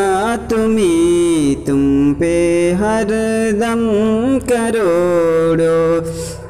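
A man's solo voice singing a Salat-o-Salam, the Urdu devotional salutation to the Prophet, in a naat style, with long held notes that glide up and down between short breaths.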